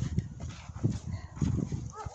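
A dog whimpering faintly in short high whines. Under it are low, irregular crunching thuds of footsteps in deep snow.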